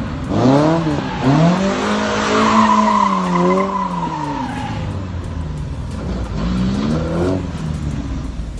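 Mk1 Ford Fiesta converted to rear-wheel drive doing donuts: its engine revs up and down in repeated bursts while the rear tyres squeal, the squeal strongest and longest through the middle, with fresh revs near the end.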